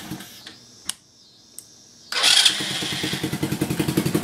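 A 125cc ATV engine running, then cutting out just after the start. After a short gap of near quiet with two faint clicks, it starts again about two seconds in and settles back to a steady idle.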